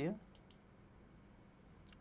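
Two quick computer mouse clicks about half a second in, close together, over faint room tone.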